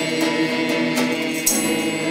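A small group of men singing a Christmas pastorella together in unison, with a short sharp click or tap about four times along with the singing.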